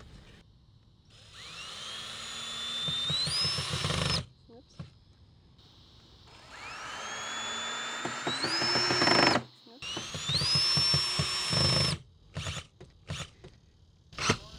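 Power drill driving screws into wood, in three runs of a few seconds each. The motor's whine climbs in pitch through each run. A few light clicks follow near the end.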